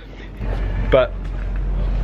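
A low, steady rumble that comes in about half a second in, under a single short spoken word.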